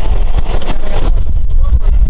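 Vintage BMT BU gate car running along the track, heard from inside the car: a loud, steady low rumble of wheels and running gear.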